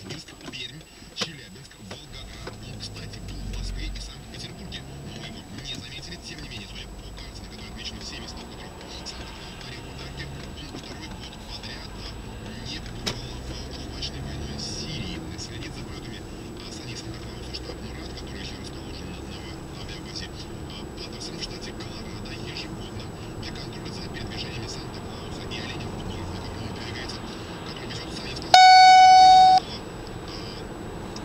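Steady road and engine noise inside a moving car, with one loud electronic beep near the end: a single flat tone about a second long that starts and stops abruptly, the dashcam's alert tone.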